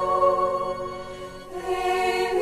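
Choral music: a choir holds sustained chords. The chord fades about a second and a half in, and a new phrase begins near the end.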